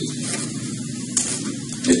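Steady hiss of room and recording noise in a pause between spoken phrases, with a brief click about a second in; a man's voice comes back at the very end.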